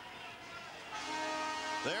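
Australian football ground's final siren sounding a steady, held tone that starts about a second in, marking the end of the match.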